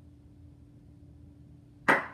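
An Alka-Seltzer film-canister rocket popping: one sharp pop near the end as gas pressure from the tablet fizzing in water blows the lid off.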